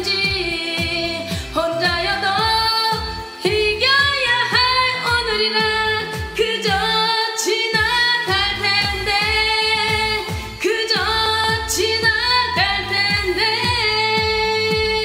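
Sung vocal line over a karaoke backing track of a K-pop dance song with a steady beat.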